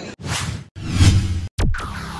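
Two whoosh sound effects, each about half a second, then a brief cut and a falling swoop as a short electronic logo jingle starts near the end.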